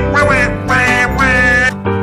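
Donald Duck's squawky, quacking cartoon voice giving two wavering calls, a short one and then a longer one of about a second, over cheerful orchestral cartoon music.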